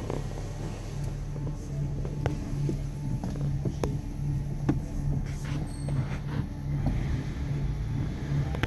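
2006 Honda Civic's 1.8-litre four-cylinder engine idling steadily, heard from inside the cabin as a low hum. A few sharp clicks are scattered through it.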